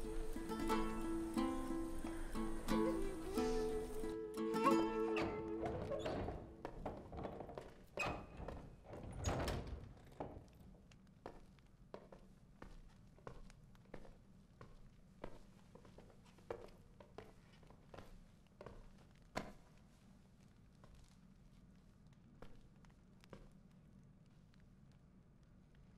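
Background score music that fades out about six seconds in, followed by a run of short, irregular thuds of boots on a floor, about one or two a second, growing quieter.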